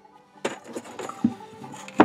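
Handling noise of a round wooden bowl blank on a wooden workbench: a string of knocks and scrapes as it is turned over and set down, with a duller thump near the middle. It ends in one sharp, loud click as a steel rule is laid on the wood.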